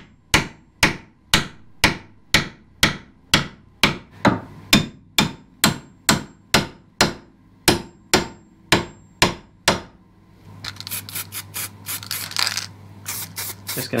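Hammer driving a long steel drift against a Jeep XJ front sway bar fitting: sharp metallic blows at a steady two a second, stopping about ten seconds in, followed by lighter, quicker clattering.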